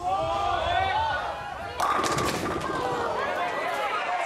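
Many crowd voices calling out while a bowling ball rolls down the lane, then the ball crashes into the pins about two seconds in, and the voices carry on.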